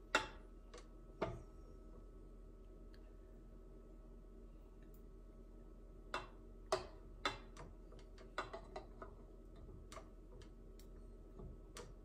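A spatula scraping and tapping against a small container as thick caramel is scraped out, in scattered light clicks and knocks, a few near the start and more about halfway through. A faint steady hum runs underneath.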